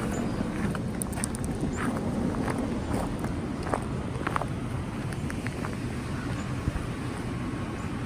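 Footsteps on gravel, a scatter of light irregular crunches and clicks, over a steady low rumble.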